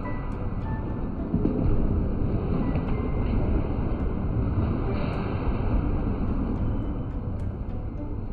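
Bowling ball rolling down a wooden lane, a steady low rumble that grows a little louder after about a second and a half, over background music in the alley.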